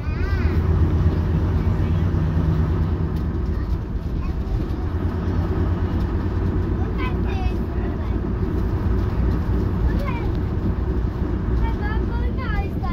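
Leyland Leopard PSU3 coach's underfloor diesel engine running as the coach travels, heard from inside the passenger saloon as a steady low drone, strongest in the first few seconds. Passengers' voices come through briefly over it.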